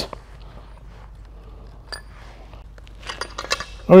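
Light metallic clinks as a steel cam phaser with a holding tool through it is set into a bench vise and clamped: one sharp chink about halfway, then a few quick clicks near the end.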